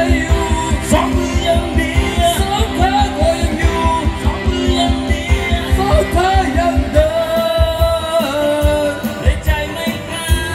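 Karaoke: a singer on a microphone over a loud backing track with a fast, steady bass beat, played through outdoor PA speakers. The beat thins out about seven seconds in while the singing goes on.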